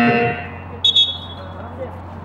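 A game buzzer sounds a loud, steady tone that stops a quarter second in. A referee's whistle follows a little under a second in: two quick shrill blasts, the second held briefly.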